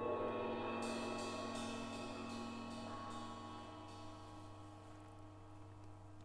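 Percussion music: a gong and other metal percussion ring on and slowly die away. About a second in, a run of light, bright metallic strokes comes in, roughly three a second, and stops about a second before the end.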